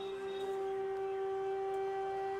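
Background music: one long, steady held note on a flute-like wind instrument, over faint lower accompaniment.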